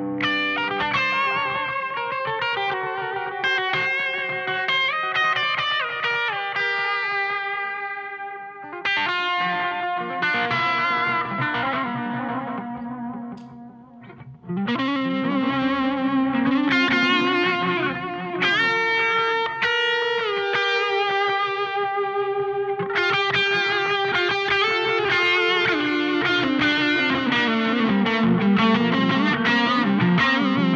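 Electric guitar on its bridge pickup through a Victory Silverback valve amp, with a TC Electronic Flashback delay in the amp's effects loop. It plays overdriven, atmospheric single notes and held, bent notes, with delay repeats trailing behind. The playing thins out about 13 seconds in, then comes back louder a second or so later.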